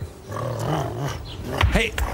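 A low, rough dog growl lasting about a second, then a short spoken 'Hey'.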